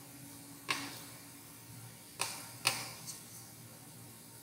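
Three sharp clicks from a lecturer's drawing and writing setup: one about a second in, then two in quick succession a little past halfway, followed by a fainter tick.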